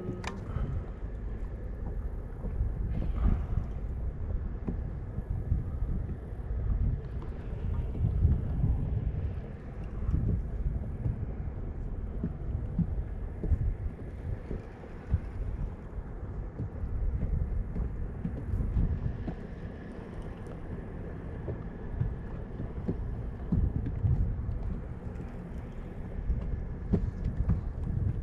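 Wind buffeting the microphone: a low, uneven rumble that rises and falls in gusts.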